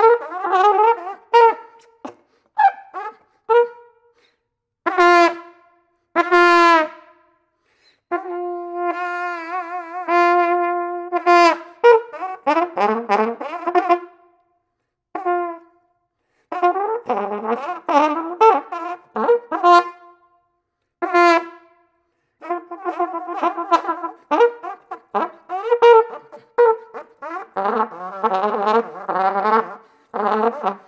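Solo flugelhorn playing a contemporary concert piece: short separated notes broken by silences, then a long held low note with a wavering pitch about eight seconds in, then fast flurries of notes in the second half.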